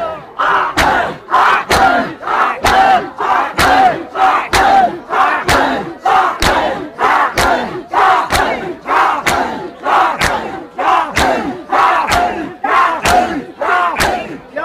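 A crowd of mourners doing matam, beating their chests in unison with sharp slaps about twice a second, and voices shouting together between the strikes.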